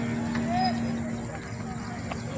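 Voices in an open outdoor space, one held voice note fading out about a second in, over a faint background hum and a few faint ticks.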